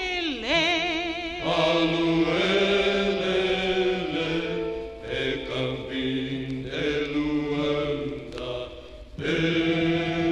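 Vocal music from a 1957 Brazilian folk record: a woman's voice with a wide vibrato glides down at the start, then a vocal group sings long held, chant-like chords, briefly dropping away just before the end.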